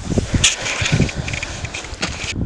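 Wind buffeting the microphone in irregular low gusts, with a sharp click about half a second in.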